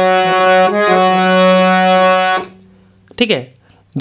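Harmonium playing a slow melody phrase in long held reed notes over a sustained low note, the pitch changing once or twice, then stopping about two and a half seconds in.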